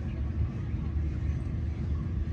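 Wind buffeting the phone's microphone: a steady, fluttering low rumble.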